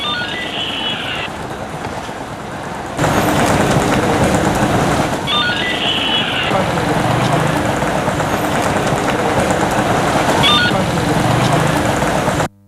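Road traffic with motorcycles running past, a steady dense noise that gets louder about three seconds in. A short high-pitched tone sounds three times, near the start, in the middle and near the end.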